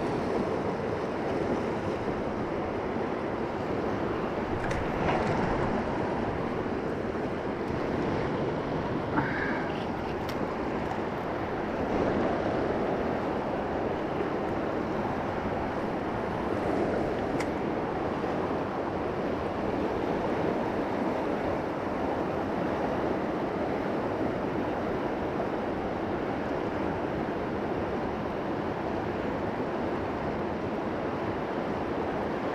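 Steady rushing of a fast mountain river running over rocks and riffles, with a few faint clicks in the first half.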